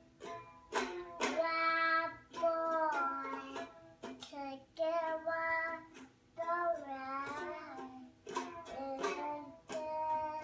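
A young child singing while strumming a small toy guitar, the strums loose and irregular between sung phrases.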